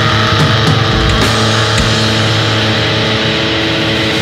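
Grunge rock recording: a loud, distorted chord held and ringing out, with only a couple of drum hits in the first two seconds.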